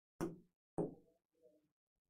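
Two sharp finger taps on an interactive smartboard's touchscreen, about half a second apart, as an on-screen timer is set.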